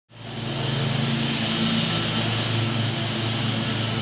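A steady low mechanical hum over a broad hiss, fading in at the start.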